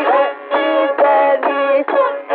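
Carnatic classical concert music from an old, narrow-band radio recording, sounding thin with no bass or top. The melodic line moves in short held notes, a quarter to half a second each, with gliding ornaments and no drum strokes.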